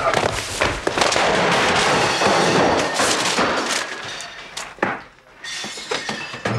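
A scuffle: people tumbling and crashing to the floor in a doorway, a dense clatter of thuds and knocks with a laugh at the start, dying down after about four and a half seconds, with a short second burst near the end.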